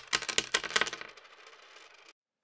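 Sound effect of many coins dropping and clinking in quick succession; the clinks thin out about a second in, leaving a fading metallic ring.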